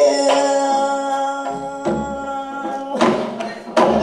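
A woman singing in gayageum byeongchang style, holding one long note while accompanying herself on the gayageum, the Korean twelve-string zither. Sharp plucked accents break in several times, about a second and a half in, near three seconds and near the end.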